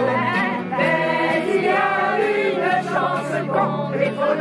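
An EKO acoustic guitar being played, with several voices singing together over it.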